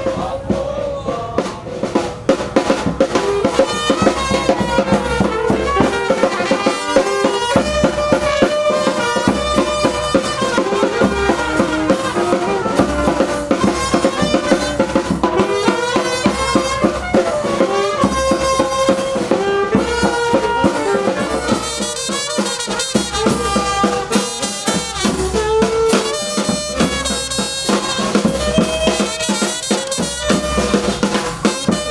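Funeral brass band playing: snare drum and bass drum keep a steady, busy beat under a melody carried by trumpet and saxophone.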